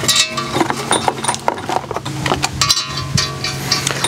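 Steel main studs clinking and ringing against each other and the block as they are picked up and started into the holes by hand: a quick run of sharp metallic clicks with short ringing tones.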